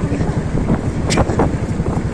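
Wind buffeting the microphone of a moving TVS Ntorq scooter at low speed, a steady fluttering rumble with the scooter's running and road noise underneath.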